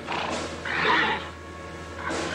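A horse whinnies once, loudest about a second in.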